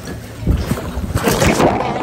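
Sea water splashing and sloshing as a snorkeler in fins climbs down a boat's ladder into the water, with wind on the microphone. The splashing is loudest about half a second in and again around a second and a half.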